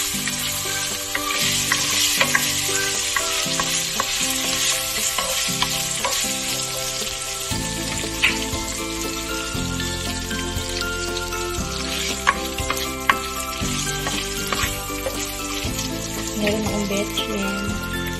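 Beef cubes sizzling in hot oil in a nonstick wok, with the crackle and occasional sharp ticks and scrapes of a spatula stirring them. The meat is being seared first to seal it.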